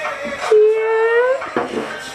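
A voice holding one long note for about a second, rising slightly at the end, with shorter voice sounds before and after it.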